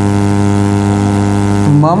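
A loud, steady electrical hum made of several even tones, unchanging throughout. A man's voice comes in near the end.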